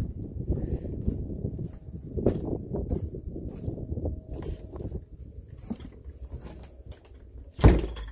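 Wind buffeting the phone's microphone with rustling and handling noise as the camera is carried, fading out, then near the end a single loud thump of a door shutting.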